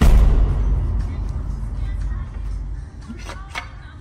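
Sudden loud music sting heavy in bass, hitting at once and fading over about three seconds, with two short knocks a little after three seconds in.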